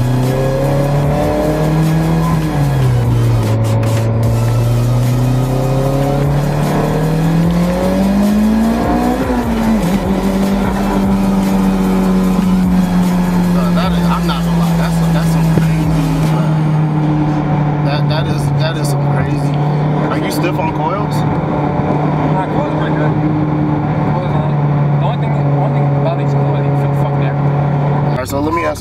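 Mitsubishi Lancer Evolution X's turbocharged inline-four engine heard from inside the cabin. Its pitch rises and falls through several pulls in the first ten seconds, then holds a steady drone that sinks slowly.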